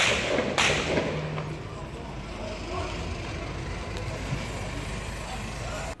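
Outdoor street ambience at a police scene: a steady low rumble from vehicles, two short rushes of noise in the first second, and faint distant voices.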